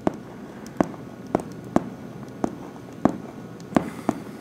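Pen tapping and clicking against an interactive whiteboard while numbers are written on it: about seven sharp taps at uneven intervals over faint room tone.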